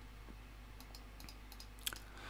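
A few faint computer mouse clicks, with a slightly louder click near the end, over a low steady hum.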